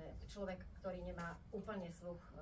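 A woman's voice, heard at a distance in a hall, delivering short phrases at a fairly level, held pitch.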